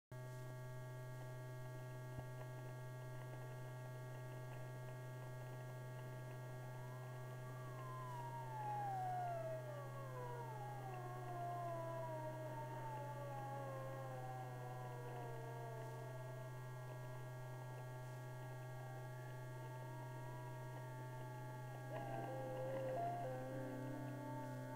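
Sirens winding down: from about seven seconds in, several wailing tones glide slowly downward one after another, over a steady low hum. Near the end, steady musical tones come in.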